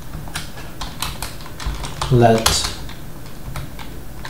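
Typing on a computer keyboard: an irregular run of key clicks, with a brief vocal sound about halfway through.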